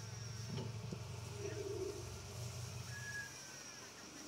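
A metal spatula working on a flat-top griddle, giving a couple of light clicks about half a second in, over a steady low hum that cuts out about three seconds in.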